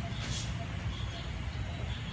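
Steady low rumble of road traffic, with a short hiss near the start.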